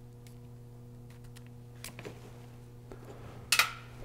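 Faint small metal clicks as a small screwdriver works the retaining pins out of a cordless polisher's plastic gearbox housing, with a louder sharp click near the end, over a steady low hum.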